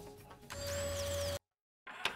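Short electronic transition sting from a TV news broadcast: a held tone over a low hum with a faint high sweep rising and falling, cut off abruptly into a moment of dead silence.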